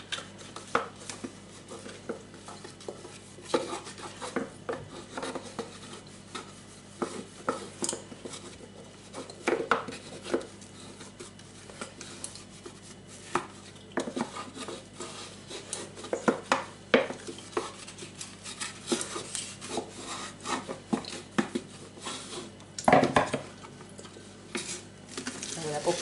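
A coffee-maker carafe being scrubbed inside with a sponge over a stainless-steel sink. Irregular knocks, clatter and rubbing come from the carafe against the sink and the utensils, with one louder knock near the end.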